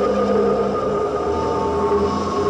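Live band music from an audience tape: sustained synthesizer tones held steady, with a low bass note coming in a little past halfway.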